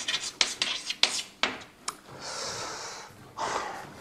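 Chalk writing on a blackboard: a quick run of taps and scratching strokes for about two seconds, then a soft hiss lasting almost a second and a short rustle just before the end.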